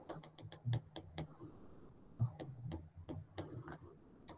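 Stylus tapping and sliding on a tablet's glass screen while handwriting: a run of irregular light clicks, some with a soft low thud.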